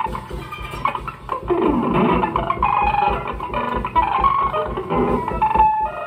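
Live electric guitar and drum kit playing together: the guitar plays short, scattered notes through a small amplifier while the drums accompany.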